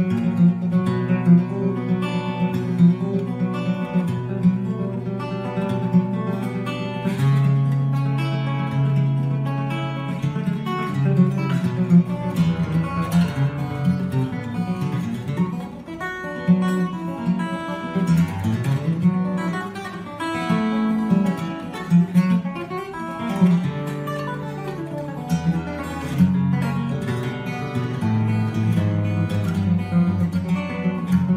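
Instrumental music led by acoustic guitar, plucked and strummed in quick notes over a sustained bass line.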